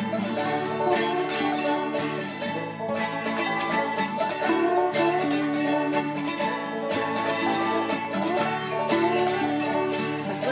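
Instrumental break in a folk-country song with no singing: plucked banjo leads over other acoustic strings and held low notes.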